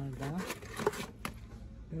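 Card-and-plastic packs of kitchen knives being handled and pulled from a cardboard shelf box: a few short clicks and the rustle of packaging.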